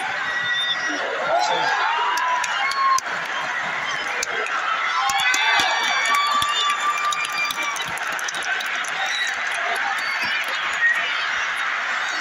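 Hockey arena crowd noise during play: many voices talking and shouting at once in a large echoing hall, with a few sharp clicks around the middle.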